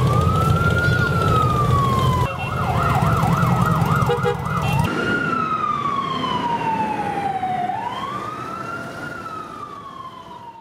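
Emergency-vehicle siren wailing, rising and falling slowly. It switches to a fast yelp for a couple of seconds, over a low rumble of vehicle engines. The rumble drops away about halfway through and the siren fades out gradually near the end.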